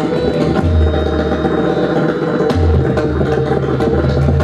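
Pakhawaj played solo: fast, dense strokes on the barrel drum, with deep bass-head notes that ring for about a second at a time. A steady harmonium melody holds underneath.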